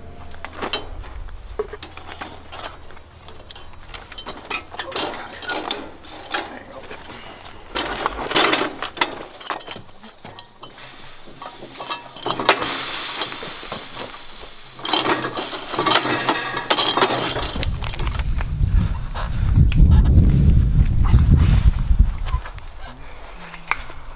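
Barbed wire and steel parts of a barbed wire dispenser clinking, rattling and scraping as the wire is handled and worked through the machine. A loud low rumble sets in a few seconds before the end and lasts several seconds.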